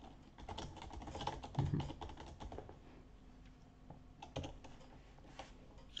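Faint typing on a computer keyboard: a quick run of key clicks for the first few seconds, then only a few scattered keystrokes.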